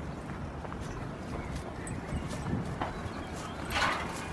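Goats grazing up close: small crisp clicks and crunches of grass being torn and chewed, over a low steady rumble. A short breathy rush comes near the end.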